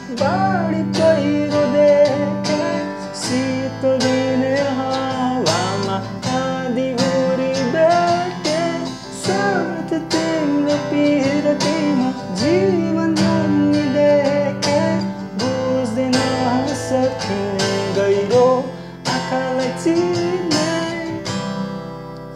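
Acoustic guitar strummed in a steady down-down, up-up, down, down-down-up pattern through a C–G–Am–F chord progression. It tails off near the end.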